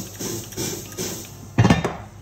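Cast-iron Dutch oven lid being lowered onto its base: quiet rubbing and shuffling, then a brief cluster of loud metal-on-metal clanks near the end as the lid seats.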